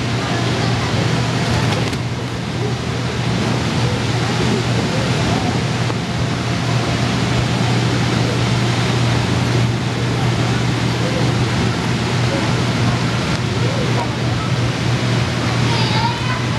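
Inflatable bounce house's air blower running, a steady low hum under a constant rushing of air, with faint distant children's voices.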